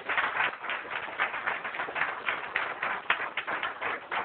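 Audience applauding: a dense, continuous patter of hand claps.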